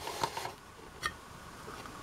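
Faint handling of a hard plastic toy playset: a few light plastic clicks as the detachable console piece of the Power of the Jedi Carbon Freezing Chamber is worked off.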